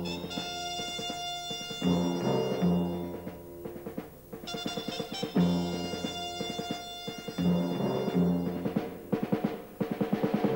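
Orchestral introduction to a ballad: timpani, drums and brass play a phrase that repeats, with a quick run of drum strokes near the end.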